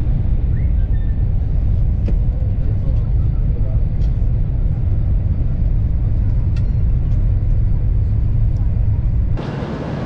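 Steady low rumble of a high-speed train running at speed, heard from inside the passenger cabin. It cuts off about nine seconds in, giving way to quieter station ambience.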